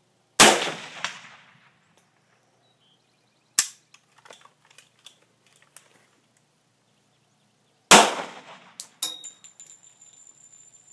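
An AK-47 rifle shot with a long echoing tail, followed by a faint clang of the struck steel plate. Then come sharp clicks and rattles of gun handling. About eight seconds in, a pistol shot with a similar echoing tail is followed by a few more clicks.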